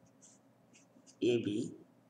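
Red felt-tip marker writing on paper: several short, faint scratchy strokes as letters are written, with a man's voice saying "A B" midway.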